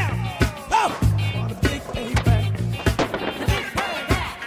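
A music soundtrack with a bass line and a singing voice. Over it, a skateboard is heard on concrete and paving: wheels rolling, and the sharp clacks of the board popping and landing during flat-ground tricks.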